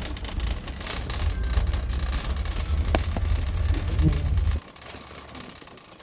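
Shopping cart wheels rolling over a hard store floor, a steady low rumble that stops about four and a half seconds in, with a single sharp click partway through.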